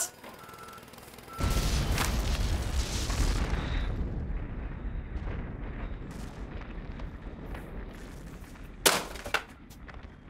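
A reversing beeper sounds twice, then about a second and a half in a demolition blast goes off: a sudden loud boom followed by a long deep rumble and crackle of the collapse that slowly fades.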